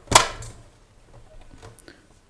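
Plastic lid of an Amazon Basics vacuum sealer snapping into its latch under hand pressure: one loud sharp clack just after the start with a brief ringing tail. A faint click follows near the end.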